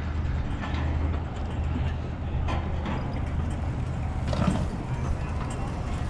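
Steady low hum of city street traffic at an intersection, with a few faint clicks and knocks over it.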